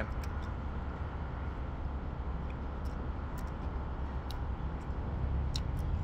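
Steady low rumble of road traffic on a wide street, growing a little louder near the end, with a few faint clicks.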